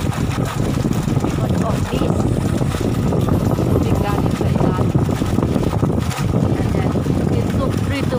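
Steady rush of water gushing from a deep-well irrigation pipe, falling into a concrete basin and churning out into a flooded rice paddy.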